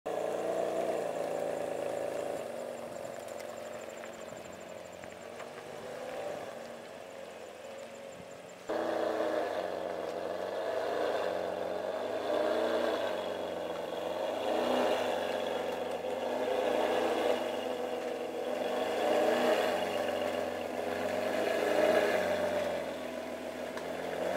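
Ferrari 599 GTB's naturally aspirated V12 running at low revs on its factory exhaust, with small rises and falls in revs; it gets abruptly louder about nine seconds in.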